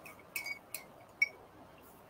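Small hard clinks of painting tools on a container or palette: about four light taps in the first second and a half, two of them leaving a short ring.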